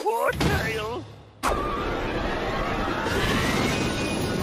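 Cartoon sound: a character's brief vocal cry, then, about a second and a half in, a sudden loud rush of steam-locomotive hiss and wheel noise with a whine that rises steadily in pitch.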